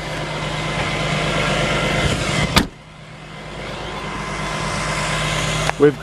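A hatchback's tailgate shut with one sharp knock about halfway through, with a steady rushing noise before and after it.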